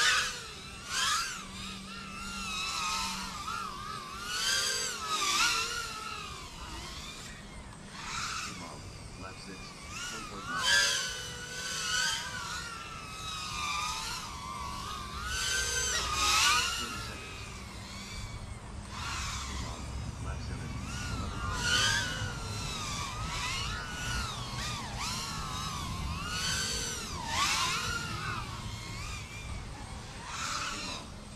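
Small FPV racing quadcopter's brushless motors whining, the pitch sweeping up and down with each punch and chop of throttle. The sound swells every few seconds as the quad passes close through the gates.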